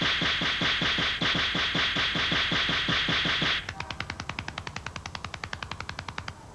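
A rapid flurry of face slaps, about six a second and evenly paced. About two-thirds of the way through it drops to lighter, quicker slaps.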